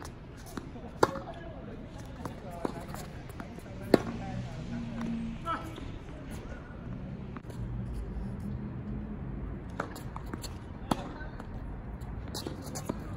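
Tennis ball struck by rackets and bouncing on an outdoor hard court: single sharp pops a second or more apart, the loudest about four seconds in, a pause, then two more near the end.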